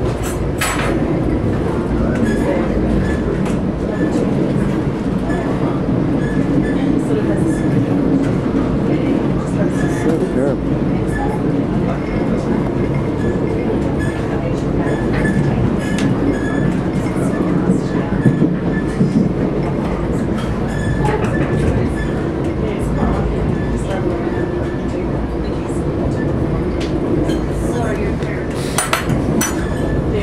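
Steady rumble of a moving passenger train heard from inside the car, with scattered sharp clicks and rattles and a cluster of louder clicks near the end.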